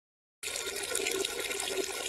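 A toilet flushing: a steady rush of water that starts about half a second in.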